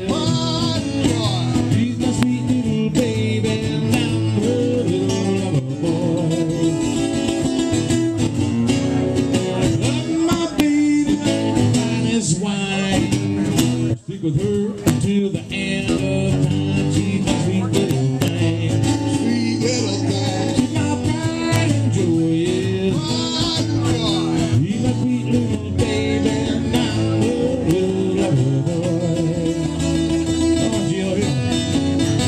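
Two acoustic guitars playing a blues tune live, with a short stop about halfway through before the playing picks up again.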